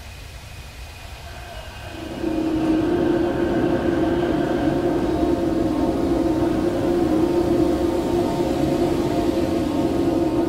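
Steady ambient drone: a low held tone with several steady tones above it, coming in abruptly about two seconds in over faint background noise.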